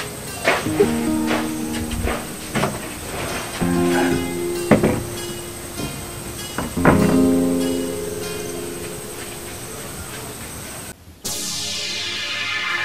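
Background film music of single struck notes that ring and fade one after another; just before the end it breaks off and a different, denser music cue begins.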